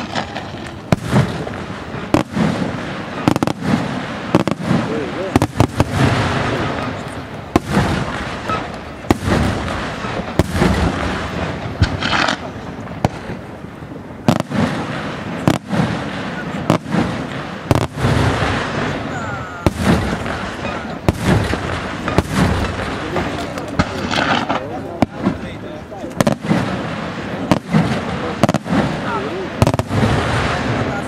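Aerial fireworks shells bursting in rapid succession, a sharp bang every second or so, with dense noise carrying on between the bangs.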